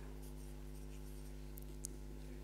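Quiet room tone with a steady low hum, and one faint click near the end.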